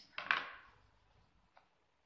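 Crochet hook set down on a tabletop: a brief clack with a short rustle of handling that fades within half a second, then a faint click.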